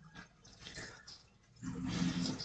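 A man's low, rough voiced throat sound, made with the mouth closed, starting about one and a half seconds in after a soft breath.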